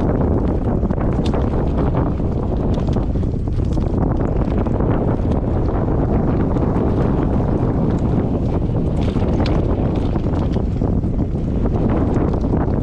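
Wind buffeting the microphone of a rear-facing action camera worn by a rider moving fast downhill on a mountain-bike trail, as a steady, loud rumble. Frequent small clicks and knocks run through it from the bike and gear rattling over the rough dirt track.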